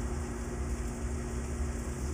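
Steady low hum with a faint hiss: the background room tone of a gym.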